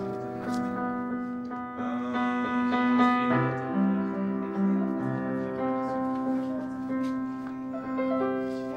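Upright piano played in slow, sustained chords, with new chords struck every second or so and left to ring.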